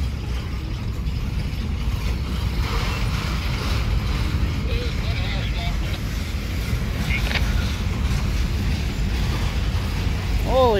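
Freight train rolling slowly through a rail yard, a steady low rumble with a single sharp clank about seven seconds in.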